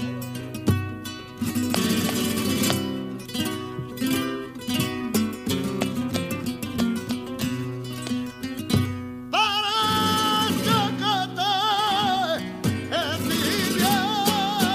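Flamenco guitar and palmas: two acoustic guitars strummed and plucked under sharp rhythmic hand-clapping. About nine seconds in, a male cantaor's voice enters over them, singing a wavering, ornamented line.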